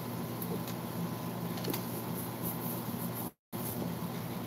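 Steady low hum of a running machine with a faint hiss, and a brief total dropout of the sound about three and a half seconds in.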